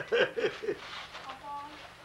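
A few short laughs and chuckles in the first second, then quiet murmured voices.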